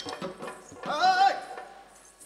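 A man's voice giving one short, wavering, drawn-out cry about a second in, with faint metallic clinking just before it.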